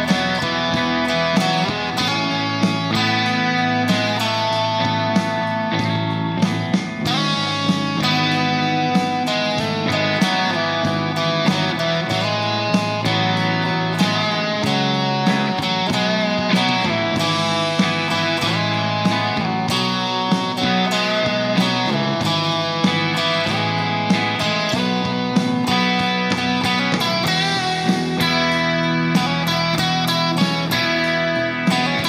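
Electric guitar played along with a backing track that has a steady beat, all of it coming out of the Enya Nova Go Sonic carbon fiber guitar's small built-in Bluetooth speaker and heard through a microphone in the room.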